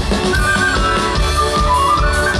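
Folk band playing live: fiddles carry a high, winding melody over a double bass and a steady low beat of about two pulses a second.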